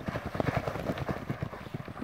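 Hoofbeats of three racehorses galloping past close by on a sand track, a rapid jumble of low thuds, with wind buffeting the microphone.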